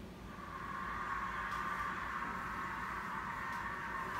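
Audio of a televised dance show playing back faintly, swelling in just after the start and then holding as a steady, even wash with no speech.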